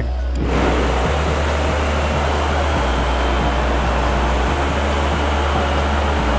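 Steady rushing noise of RC model propellers and wind close to an onboard camera on a flying foam model, starting suddenly about half a second in. Background music with a low bass line plays underneath.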